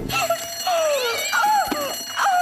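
Several cats meowing and yowling at once in a cartoon, overlapping cries that rise and fall, one long falling yowl about a second in.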